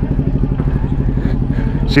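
Motorcycle engine idling steadily, a low, even, rapid pulsing.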